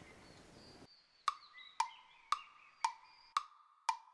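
A brief stretch of hiss cuts off just under a second in, then evenly spaced wood-block knocks start, about two a second, ticking like a timer. Faint bird chirps run behind.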